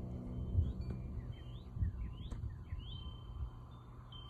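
A small bird giving a series of short rising chirps outdoors, over the fading tail of soft ambient background music.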